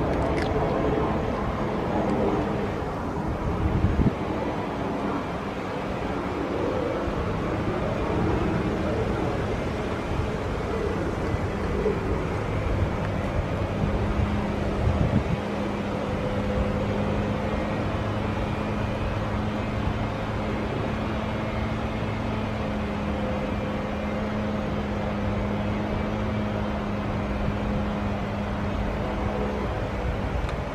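A steady low mechanical hum over a constant rumble, with the hum growing stronger about halfway through and a couple of soft knocks.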